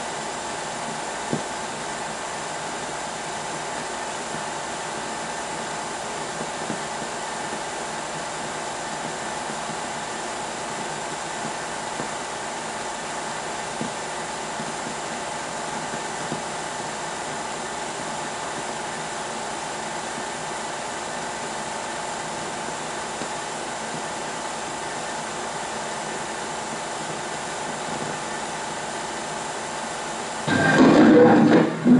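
Steady hiss with a faint hum in it and a few scattered small pops, from a 16mm film's optical soundtrack running over the silent opening titles, with no music.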